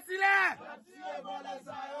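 A man gives a loud, drawn-out shout that falls in pitch over about half a second, then fainter crowd voices carry on underneath.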